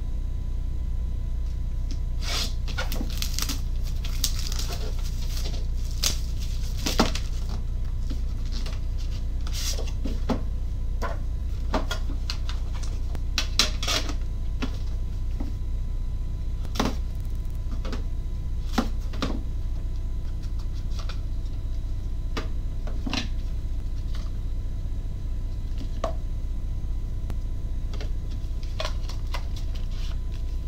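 Scattered clicks, taps and rustles as a sealed trading-card box is cut open and its pack and cards are handled, over a steady low hum.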